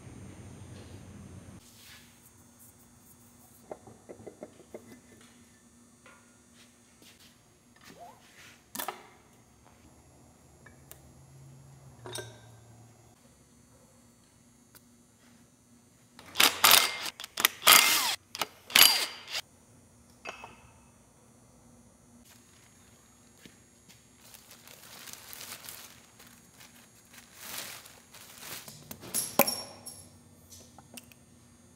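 Wrenches and metal engine parts of a John Deere 4230's diesel engine clinking and clanking as it is stripped down by hand: scattered light knocks, then a run of loud metallic rattles a little past the middle and more near the end.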